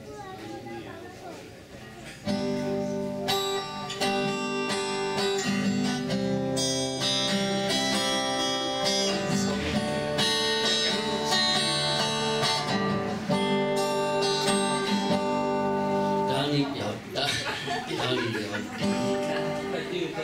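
Cutaway steel-string acoustic guitar played: a run of ringing chords starts suddenly about two seconds in and carries on until it breaks off about sixteen seconds in. Talk is heard before and after the playing.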